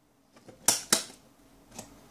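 A few sharp clicks and knocks of hand-handled metal tools at a mains socket, as pliers used to short the socket are pulled out; the two loudest come close together, under a second in, with a fainter click near the end.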